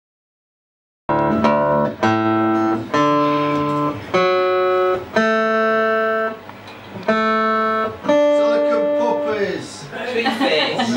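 Live acoustic guitar with a man singing over it, starting suddenly about a second in, in a series of held notes of about a second each.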